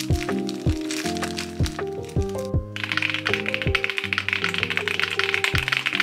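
Background music with a steady beat and held bass notes; from about three seconds in, fast typing on an RK S98 mechanical keyboard, a rapid unbroken stream of key clicks over the music.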